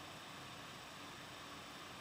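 Faint, steady hiss of background noise, with no distinct event.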